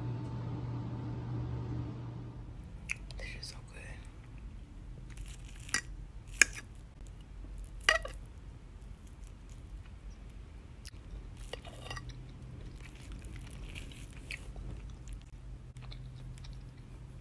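Close-up eating sounds: a person chewing and crunching food, with a few sharp clicks, the loudest about six and a half seconds in.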